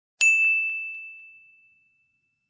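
A single bright ding, like a small bell struck once, ringing out and fading away over about a second and a half.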